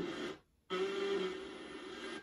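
Audio from a QUAD FM3 FM tuner, played over small computer speakers, as it is tuned across weak stations. The sound drops to dead silence for a moment about half a second in as the interstation mute cuts in. It then returns as a steady held tone for about a second before settling into faint hiss.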